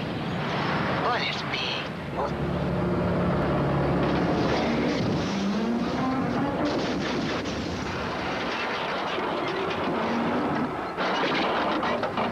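Monster truck engines running, with a rising rev partway through. This is followed by a long stretch of crunching and crackling metal as a giant monster truck rolls over and flattens a smaller one.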